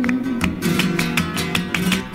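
Flamenco song with no singing for a moment: Spanish guitar strumming a short instrumental phrase, with quick sharp strokes over sustained low notes.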